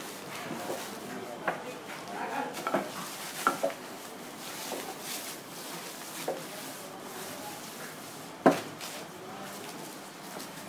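Scattered wooden knocks and clicks as a handle is worked into a cricket bat blade, with one much louder knock about eight and a half seconds in.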